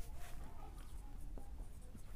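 Marker pen writing on a whiteboard: faint, short squeaks and scratches as the digits are stroked out.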